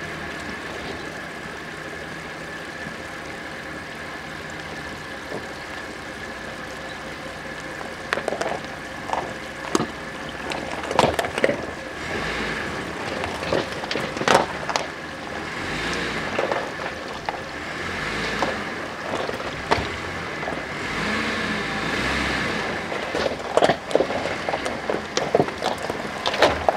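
A 4x4 SUV's engine running steadily at low speed as it crawls along a rocky off-road track. From about eight seconds in, stones crunch and knock irregularly under the tyres.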